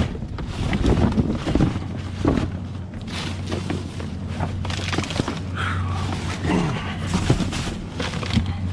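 Cardboard produce boxes and plastic-bagged produce being shifted about in a dumpster: irregular rustling and dull thuds over a steady low hum.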